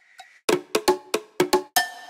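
Drum fill samples previewed one after another from the FL Studio browser: a fast run of sharp, pitched, cowbell-like percussion hits about half a second in, then a fresh sample starting near the end with a ringing hit.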